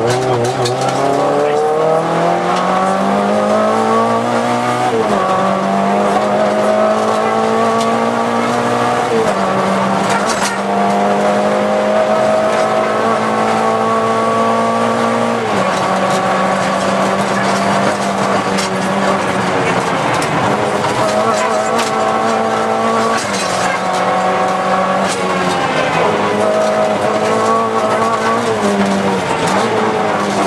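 Volkswagen Golf II GTI 16V's four-cylinder engine driven hard, heard from inside the cabin. Its pitch climbs and then steps down at gear changes, about five times.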